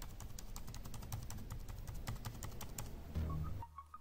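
Typing on the keyboard of an Acer Aspire 3 (A315-24P) laptop: a rapid run of quiet key clicks that stops about three seconds in.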